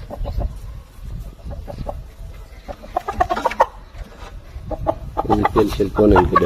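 A rooster held in the hands clucking in quick runs of short notes, strongest about three seconds in.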